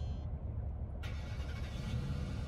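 Low rumble of a car heard from inside the cabin, with a steady hiss joining about a second in.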